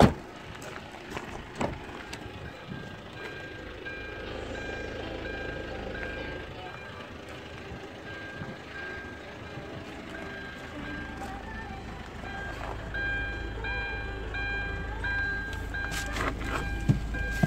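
A sharp knock like a car door shutting, then a high electronic warning beep switching on and off at an even rate. A low rumble builds in the last few seconds.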